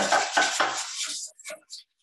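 Metal balloon whisk scraping and clinking against a saucier pan while béchamel is whisked: a quick run of strokes that thins to a few light clicks about a second in, then stops.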